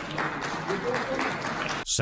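Audience applauding, with voices talking over it; the applause cuts off suddenly near the end.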